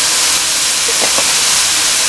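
Sliced roast beef with diced onions and bell peppers frying in butter in a nonstick electric skillet, a steady, even sizzle.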